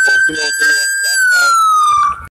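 Police car siren wailing: a loud, high tone that holds steady, then falls away over the second half.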